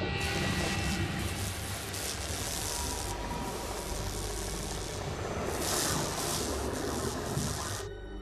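Underwater cutting torch hissing as it cuts into a missile casing. The steady hiss stops suddenly near the end.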